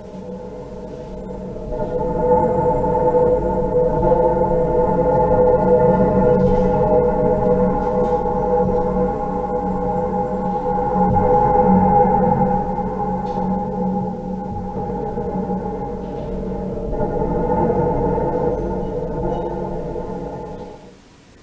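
Electronic music played over loudspeakers: a sweeping, slowly varying drone of several held tones that swells and eases and fades out near the end. It is the start of a piece's second intermezzo, whose sound moves around the audience from one speaker to the next.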